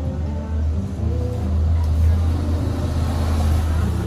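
Background music with a loud low rumble over it that swells through the middle and eases off near the end.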